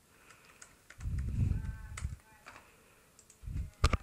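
Computer mouse clicking: scattered single clicks and double-clicks, with a soft low muffled sound between about one and two seconds in.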